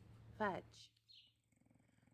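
A brief falling vocal sound about half a second in, then only faint sound.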